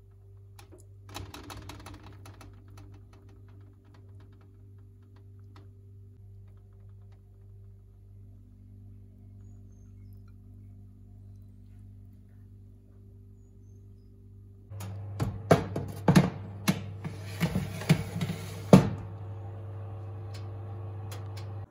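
Metal knocks and clanks of a baking tray going into an oven, over the steady hum of the oven's fan, starting about three-quarters of the way through. Before that there is only a low hum with a few soft clicks as cheese is set onto the slices.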